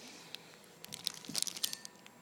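Paper pages of a large hardcover book rustling as they are handled, with a cluster of crisp crackles in the second half.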